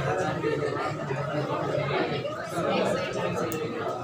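Indistinct chatter of several voices talking at once, steady throughout with no single clear speaker.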